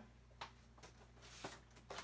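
Near silence: room tone with a low steady hum and a few faint, light clicks.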